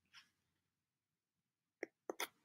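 Near silence, broken near the end by one short, sharp click: a mouse click advancing the presentation slide.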